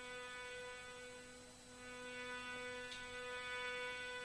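A steady hum at one low pitch with many overtones, holding unchanged, with a faint thin high whine above it.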